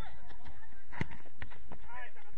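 A football kicked hard about a second in, a sharp thud that is the loudest sound, followed by two fainter knocks. Players' shouts are heard at the start and near the end.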